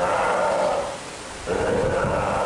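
Steller sea lion calling twice: a rough call of under a second at the start, and another beginning about a second and a half in.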